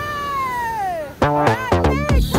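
Background music: a long note sliding down in pitch over the first second, then a quick run of notes with a steady beat.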